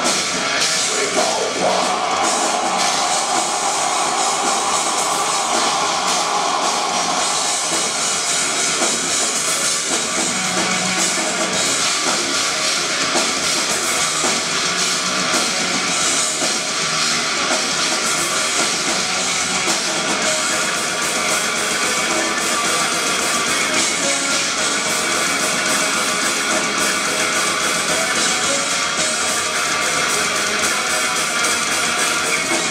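Melodic death metal band playing live through a PA: distorted electric guitars, bass and drum kit in a dense, unbroken wall of sound, heard from the audience.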